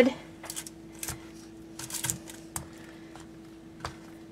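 Aluminium foil crinkling and light taps as wooden shrimp skewers are handled on a foil-lined sheet pan: several short, scattered rustles over a faint steady hum.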